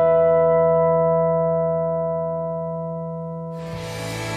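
A chord on a Gretsch resonator guitar, struck just before, rings out and slowly fades. Near the end, a different piece of music comes in.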